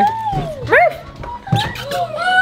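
A six-month-old puppy whining and yipping in short, sliding high cries, excited at greeting its family, with a sharp knock about one and a half seconds in.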